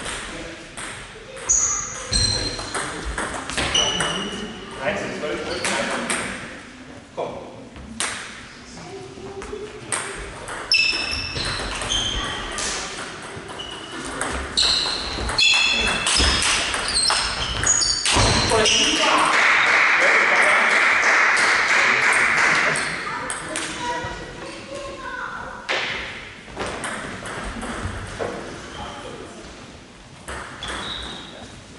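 Table tennis rallies: the plastic ball clicks sharply off the table and the rubber bats, each hit with a short high ping, in irregular runs of strokes. About two-thirds of the way through, a loud rushing noise lasts around three seconds, and voices call out between points.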